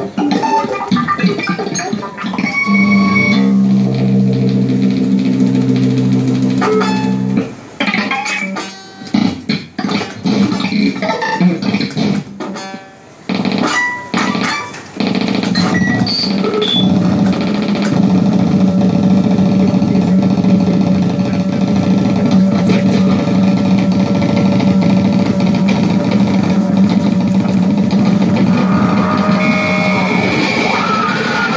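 Experimental improvised music for electric guitar and electronics. The first half is stop-start: sharp stabs and held tones that cut off suddenly. From about halfway in, it settles into a dense, sustained drone.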